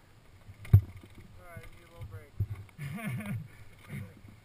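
Dirt bike engine heard through a helmet-mounted camera, muffled, its pitch rising and falling with the throttle as the bike rides a rough trail, with a sharp knock a little under a second in.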